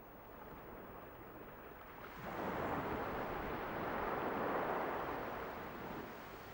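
Ocean surf washing on the beach, a soft hiss that swells about two seconds in and fades away toward the end.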